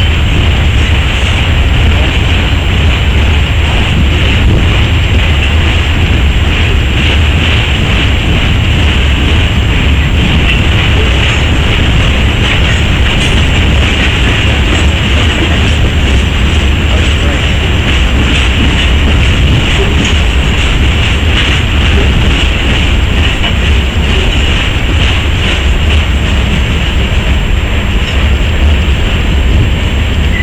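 Norfolk Southern ballast hopper cars rolling past close by: a loud, steady rumble of wheels on rail that runs on without a break.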